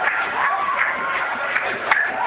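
Church congregation in a praise break: many feet shuffling and stomping on the floor with scattered sharp hits, voices calling out over it, and music underneath.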